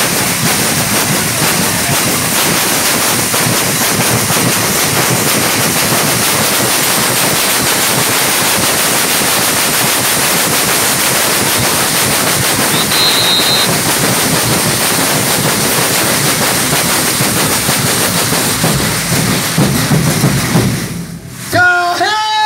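Many metal disc shakers (patangomes) of a congada Moçambique group shaken together in rhythm, a loud dense steady rattle. A brief high tone sounds about halfway through, and the rattle breaks off about a second before the end as singing begins.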